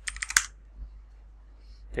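The last few keystrokes on a computer keyboard as a password is entered, ending about a third of a second in with one sharper key click.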